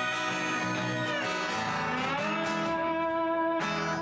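Instrumental break in a song: harmonica playing held notes with a bend downward and a glide up, over strummed acoustic guitar.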